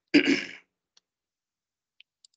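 A man clearing his throat once, a short rasp in the first half-second.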